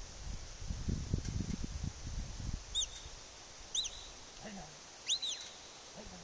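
Low rumbling wind buffeting on the microphone for the first couple of seconds, then three short whistled notes, each rising and falling in pitch, about a second apart; the last is the loudest.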